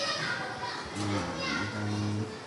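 A man's voice making drawn-out, wordless hesitation sounds, each held on one low pitch for about half a second, two of them in the second half.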